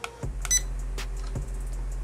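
A short high electronic beep about half a second in, as a photo is taken with the SG701 drone's camera from the transmitter's button. A few faint clicks follow over a low steady hum.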